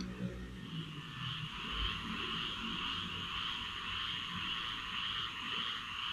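A steady, high-pitched chorus of calling animals in the background, fading in about a second in and easing off near the end.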